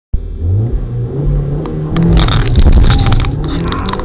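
Audi S3's turbocharged four-cylinder engine accelerating hard, heard from inside the cabin. The revs rise, dip about two seconds in at an upshift, then climb again.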